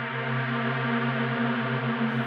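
Software synthesizer pad holding a sustained chord, drenched in a huge washy reverb, slowly swelling louder.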